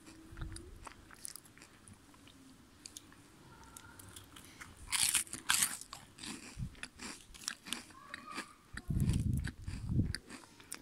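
A crisp strawberry cream wafer being bitten and chewed close to the microphone: sharp crunches and small crackles, with a loud run of crunching about five seconds in and a burst of low thuds near the end.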